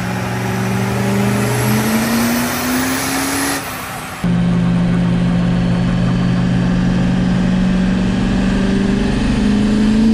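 Diesel pickup truck engine under load on a chassis dyno, its note climbing steadily in pitch. About four seconds in it cuts abruptly to a steady engine note heard from inside the cab, which begins to rise again near the end.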